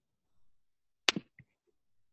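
A mostly quiet pause with one short, sharp click about a second in, followed by a couple of faint smaller ticks.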